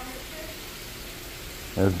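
Steady splashing rush of water pouring into a large fish pond from a hose-fed return outlet. A man's voice starts near the end.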